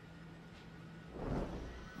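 A faint steady low hum, then a brief whooshing swell that rises and fades away about a second in.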